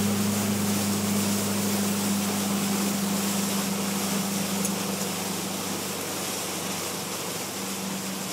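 Motorboat engine running at a steady cruise, a constant low drone under an even rush of wind and water.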